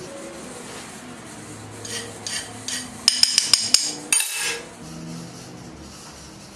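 Light metal-on-metal taps and clinks from a small steel hand tool being handled. A few soft taps come about two seconds in, then a quick run of about five sharp, ringing clicks, then a brief ringing scrape.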